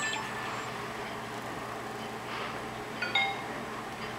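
A brief electronic beep of a few stacked tones about three seconds in, over a low steady hum.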